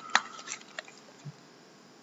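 A few light clicks and taps of cardboard trading card boxes being handled by hand. The sharpest click comes just at the start, and a soft low knock follows a little past a second in.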